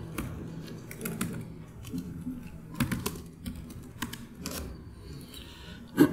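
Typing on a laptop keyboard: irregular keystrokes, a few clicks at a time with short pauses between, as commands are entered at a terminal.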